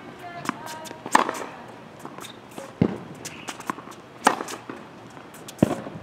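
Tennis rally on a hard court: sharp pops of racket strings striking the ball, with the ball bouncing, about every second and a half. Brief squeaks of tennis shoes on the court come near the start.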